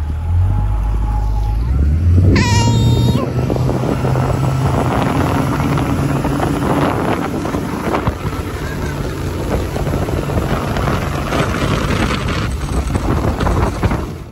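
Mercury outboard motor accelerating, its pitch climbing over the first few seconds and then holding steady at speed, with wind buffeting the microphone. A person's brief high-pitched shout comes about two and a half seconds in.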